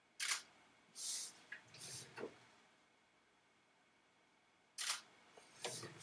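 Canon EOS 6D Mark II DSLR shutter firing twice at 1/30 s, once about a quarter second in and again near the end. A few softer noises fall between the two releases.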